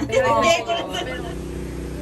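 Women's voices talking for about a second, then cut off abruptly by a steady low hum.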